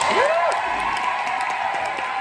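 Audience applauding and cheering as a song ends, with a single whoop near the start.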